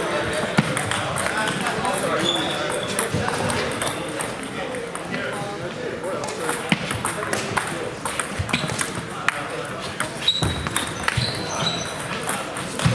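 Table tennis balls clicking sharply off bats and tables, in irregular runs of rally strokes, from this and neighbouring tables in a hall. Background chatter of voices runs underneath.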